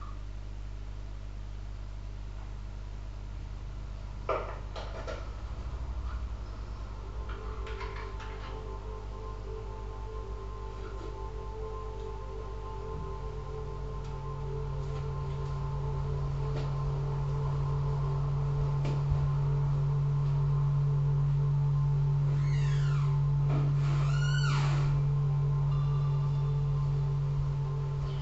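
Improvised ambient electronic music: layered steady synthesizer drones, with a deep low drone swelling in about halfway through and several falling pitch sweeps near the end.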